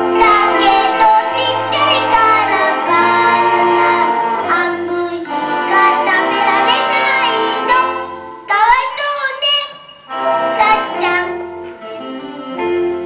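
A young boy singing a song into a microphone over instrumental accompaniment with a bass line, heard as a film soundtrack played through a screening room's loudspeakers. The singing breaks off briefly about nine seconds in, then resumes.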